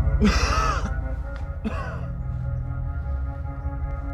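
A man's short laugh near the start and a second brief vocal burst just under two seconds in, over sustained background music that continues and eases slightly in level afterwards.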